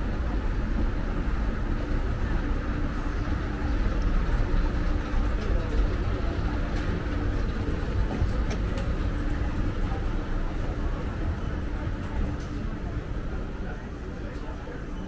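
Train running past with a steady low rumble that eases off over the last couple of seconds.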